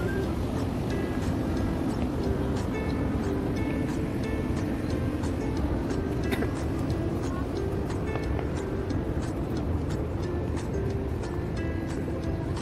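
Background music of short melodic notes in a steady pattern, over a constant low rumbling noise.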